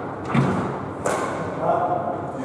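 Two hard thuds of a squash ball, about two-thirds of a second apart, ringing in the enclosed court.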